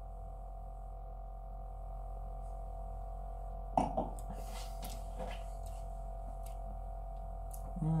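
Room tone with a steady low electrical hum while a man tastes beer in silence; about four seconds in there is a brief throat sound, and near the end an appreciative "mmm".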